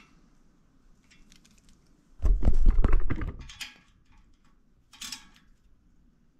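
Small metallic clicks and knocks of a tool and fittings being handled while grease zerk fittings are put into ball joints. A louder clattering knock comes about two seconds in, and a few lighter clicks follow.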